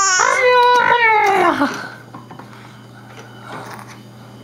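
A baby's high-pitched squeal, under two seconds long, wavering and then falling in pitch at the end.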